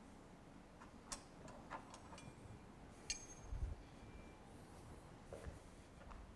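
Faint clinks of metal tuning forks being picked up and handled, a few small knocks with two of them ringing briefly in a thin high tone, and a soft low thump midway.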